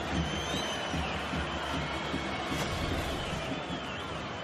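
Football stadium crowd noise, a dense mass of voices chanting, with several long, sliding whistles from the stands.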